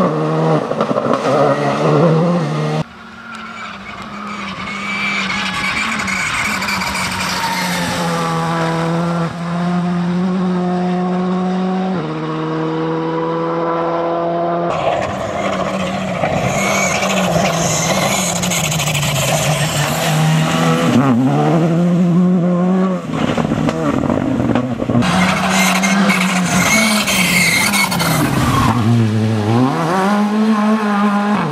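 Škoda Fabia R5 rally car's 1.6-litre turbocharged four-cylinder engine driven hard, its pitch climbing through the gears and dropping on lifts and braking. It comes as several separate passes, each breaking off abruptly into the next.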